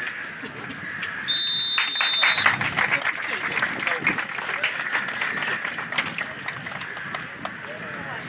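A referee's whistle blows one steady blast of about a second, followed by spectators clapping for several seconds, with crowd voices underneath.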